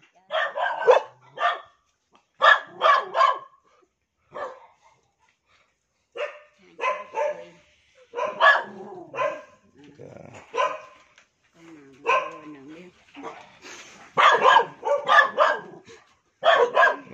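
Dogs barking in short runs of two or three barks with pauses between.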